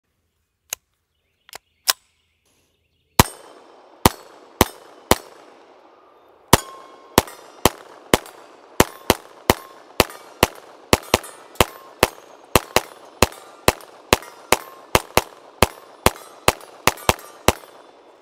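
A few light clicks, then a Ruger PC Charger 9mm semi-automatic pistol fired in a long rapid string of about thirty shots. The shots come roughly two a second and quicken near the end, each followed by a ringing echo.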